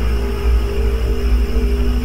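Dark, eerie intro music: a deep low drone with a few steady held tones above it.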